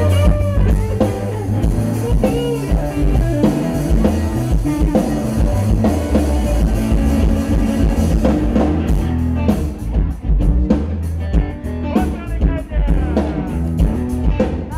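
A rock trio playing live through a PA system: electric guitar over a steady drum-kit beat, with heavy bass. The drum hits stand out more sharply from about nine seconds in.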